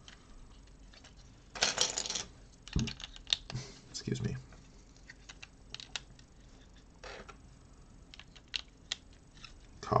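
LEGO bricks being handled and pressed together: scattered small plastic clicks and knocks, with a short rattle of loose pieces about one and a half seconds in.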